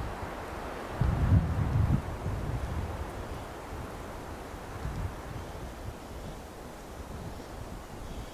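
Wind buffeting the microphone in low rumbling gusts, the strongest about a second in, over a steady hiss of wind.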